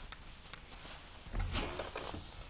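A few soft footsteps, then about a second and a half in a person sits down onto a metal folding chair with a dull thump of the seat.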